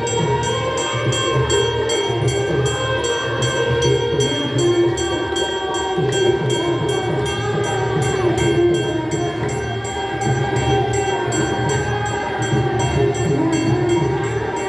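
Hindu aarti being sung in devotional chorus over a steady beat of bells and cymbals, struck about four times a second.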